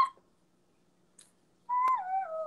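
A woman's high hummed 'ooo' cuts off right at the start, and the sound drops out completely for about a second and a half: the livestream's connection glitching. The high 'ooo' comes back near the end, with a click.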